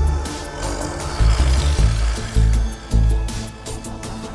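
Instrumental film-score style music played on a Yamaha Montage synthesizer: deep bass pulses about twice a second under sustained chords, with light percussive ticks and a swelling rush of noise in the first half.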